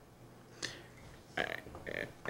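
A short pause with quiet room tone, broken by a brief breath about half a second in and a faint throaty vocal sound in the second half, like a speaker gathering himself before going on.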